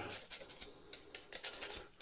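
A toothbrush scrubbing acetone-softened glue off a laptop trackpad circuit board, a run of quick, uneven scratchy strokes.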